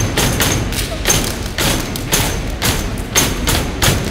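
Steppers stomping on a hollow portable stage riser: a rhythmic pattern of heavy foot stomps, about two to three a second.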